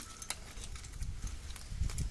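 Irregular clicks and knocks of a metal hand tool worked against a plastic pipe fitting, with a sharp click at the start and a quick cluster of knocks near the end.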